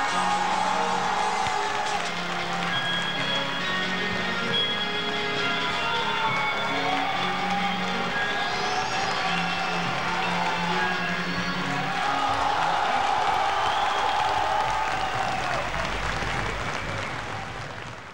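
Music with long held notes, with audience applause and cheering under it. The sound fades away just at the end.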